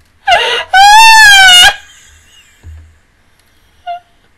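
A woman's loud, high-pitched squealing wail. A short cry comes first, then a held note of about a second that rises and falls slightly before breaking off.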